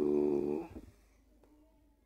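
A man's voice holding one drawn-out syllable at a steady pitch for the first part of a second, then only faint room tone.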